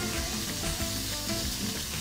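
Sliced mushrooms and strips of bondiola (cured pork shoulder) sizzling steadily as they sauté in a hot frying pan, stirred with a spatula.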